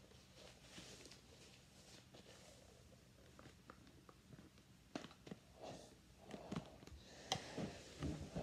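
Near silence, then a few faint clicks and rustles in the second half: a full-face snorkel mask being pulled over the head and adjusted.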